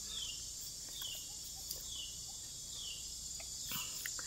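A steady high-pitched insect chorus, like crickets, with a short falling chirp repeating about once a second.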